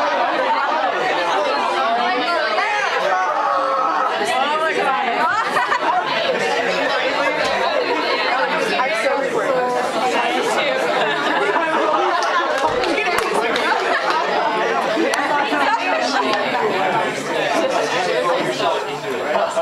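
Indistinct chatter of many people talking at once, overlapping voices at a steady level.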